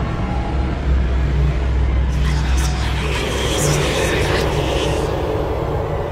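Layered horror ambience: a deep rumble like distant thunder, strongest about a second in, over a steady hiss of rain, with faint breathy whisper-like sounds in the middle.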